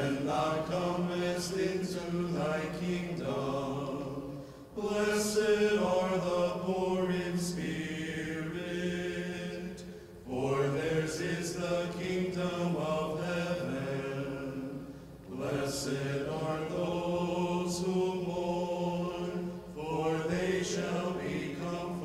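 Unaccompanied Orthodox liturgical chant sung by a church choir in several voices at once. It comes in phrases of about five seconds with short breaks between them.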